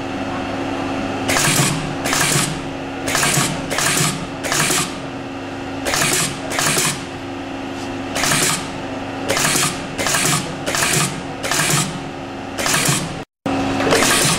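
Wire side lasting machine cycling about twenty times at an uneven pace, each stroke a short noisy burst as it pulls the shoe upper over the side of the last and fastens it with wire, over a steady machine hum.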